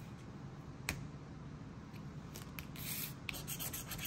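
Scratching the coating off a Texas Lottery scratch-off ticket: short rubbing strokes, thickest in the second half, with one sharp tick about a second in.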